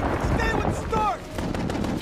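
Rapid gunfire in an animated action show's soundtrack, a string of sharp shots over a dense din, with a man shouting over it about halfway through.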